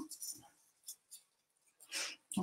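Rolled oats poured from a glass jar into a small cup: a faint, scattered patter and a few light ticks of falling grains.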